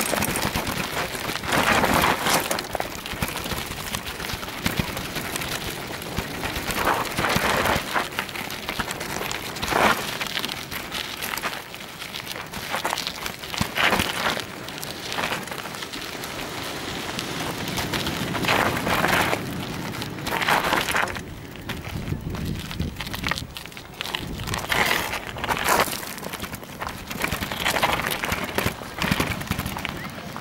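Bicycle tyres crunching and rattling over loose gravel and black volcanic sand, in uneven surges of noise as the bike rolls along.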